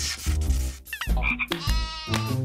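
Frog-like croaking, a comic sound effect, over background music.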